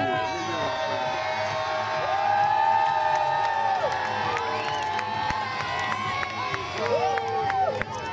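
A crowd of young children cheering and shouting together, many voices at once, with several long drawn-out shouts.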